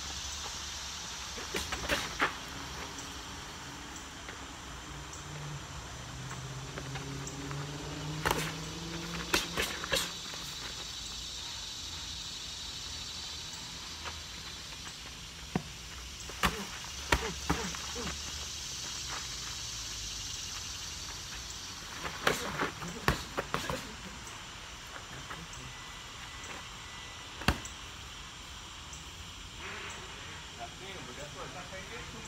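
Boxing gloves smacking as two boxers spar, in short clusters of quick punches separated by a few seconds, over a steady high background hiss.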